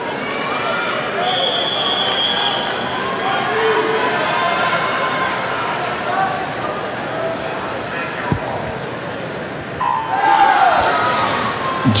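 Swim meet start in an indoor pool hall: the referee's long whistle sounds a second or so in over a murmuring crowd, and about ten seconds in the electronic start beep goes off, after which the crowd noise rises as the swimmers dive.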